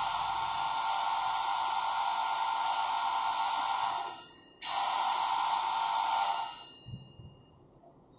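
A steady buzzing tone with many overtones sounds for about four seconds, dies away, then starts again abruptly and fades out after about two more seconds.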